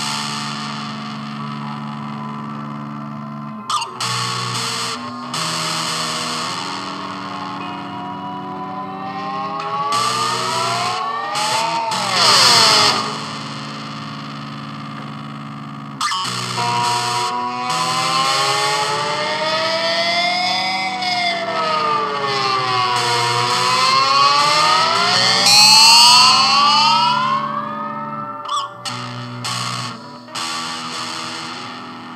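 Instrumental music with distorted, effects-heavy guitar: held low chords under lead lines that slide up and down in pitch, swelling loudest twice.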